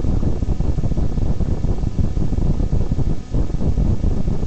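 Loud, irregular low rumbling noise on the microphone, like wind or handling noise, with no clear tones or distinct events.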